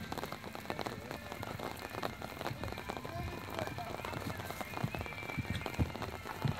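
Crackling outdoor noise with faint voices throughout. Near the end come a few dull, heavy thuds from a horse's hooves cantering on a sand arena.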